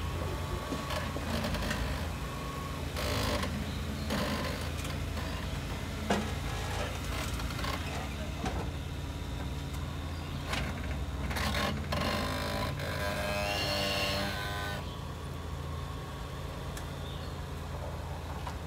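Lifted Jeep Wrangler's engine running low and steady as it crawls over rock and a log, with scattered sharp knocks from the tyres and chassis on the rock, one about six seconds in.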